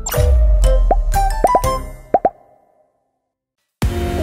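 Channel intro jingle: bright music with several short rising-pitch blip sound effects, ending about two and a half seconds in. After about a second of silence, background music starts near the end.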